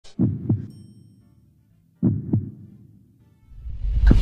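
A heartbeat sound effect: two deep double thumps, lub-dub, about two seconds apart, each fading away.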